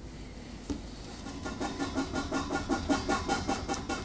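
A small fries-shaped novelty eraser rubbed quickly back and forth over pencil lines on paper. It starts about a second in, at about six strokes a second, and grows a little louder as it goes.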